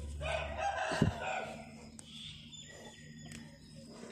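A rooster crowing once, a long crow in the first second and a half, with a low thump about a second in.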